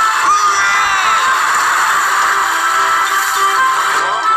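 Battery-powered bump-and-go toy cement mixer truck playing its tinny electronic tune through a small speaker, with pitch sweeps gliding down near the start.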